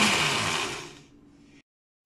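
Countertop blender running, whirring through a thick liquid mix of coconut milk, coconut oil and moringa powder; the sound fades away about a second in and then cuts off.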